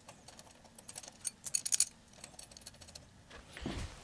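Light metallic clicks and clinks of a bolt, washers and steel alternator bracket being handled as the bolt is fitted by hand, with a quick run of ticks between one and two seconds in.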